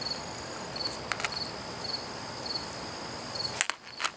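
A cricket chirping in the background, a short high chirp repeating about every two-thirds of a second over a steady hiss. A few light clicks sound about a second in, and a sharp click comes near the end, after which the background drops.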